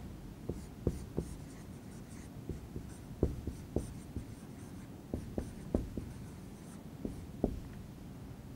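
Whiteboard marker writing on a whiteboard: irregular short taps and scratches of the felt tip as the words are written.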